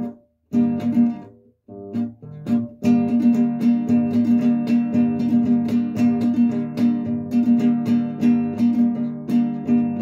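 Nylon-string classical guitar strummed in a bass-and-strum pattern, each bass stroke played as a downward sweep across the strings from the bass note for a more powerful sound. A few separate strokes with short stops in the first three seconds, then steady rhythmic strumming.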